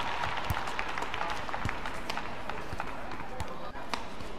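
Badminton rally: the shuttlecock struck back and forth by rackets, four sharp hits about a second apart, over arena crowd noise.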